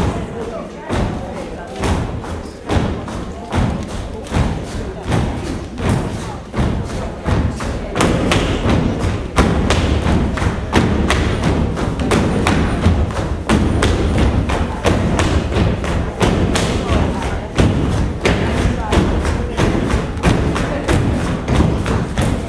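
Folk dancers' feet stamping in rhythm on a stage, about one stamp every second at first, becoming faster and denser about eight seconds in, over singing and folk string-band music.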